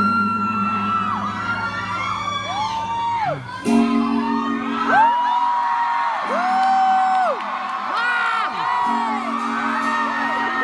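Live pop concert recorded from the audience: a female singer holds long, arching notes over electric guitar and sustained chords that change every few seconds, with fans whooping.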